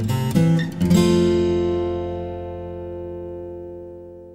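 Background music on acoustic guitar: strummed chords, ending on one last chord about a second in that rings on and slowly fades out.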